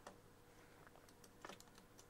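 Near silence with a few faint clicks of a computer keyboard: one at the start and a couple about one and a half seconds in, as keys are pressed to switch applications.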